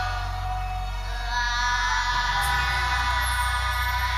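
Children's choir singing over backing music, holding a long sustained chord; the bass shifts about two and a half seconds in.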